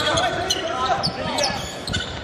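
Basketball being dribbled on a hardwood court, short repeated bounces, with voices carrying in the arena.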